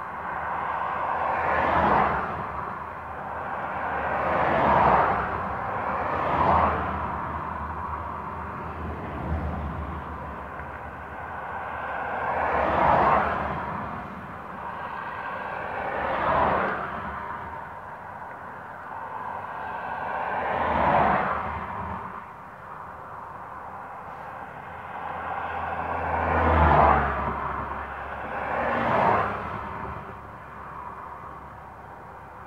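Road traffic: cars passing one after another, each swelling to a peak and fading away, about eight pass-bys in all.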